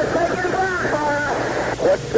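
A man's voice over a narrow, muffled radio link, with steady static hiss behind it; the words are not intelligible.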